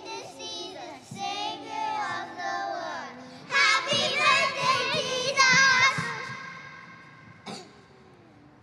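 A group of young children singing together, loudest in the middle, then dying away near the end.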